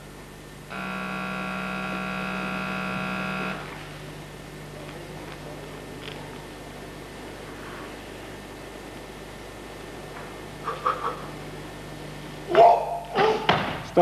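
A steady electronic buzzer tone sounds for about three seconds near the start. Near the end come short, loud shouts as a barbell is pulled from the platform into a squat clean.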